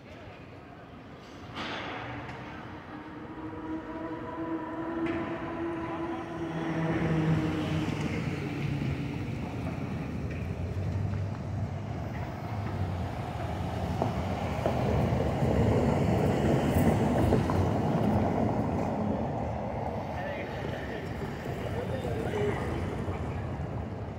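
City street traffic. A vehicle engine hums steadily from a couple of seconds in, then a louder rumble of passing traffic builds in the second half, with voices of passersby.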